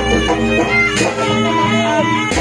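Live jaranan music: a reedy, sustained melody of the kind a slompret (Javanese shawm) plays, over gamelan percussion with deep drum strokes.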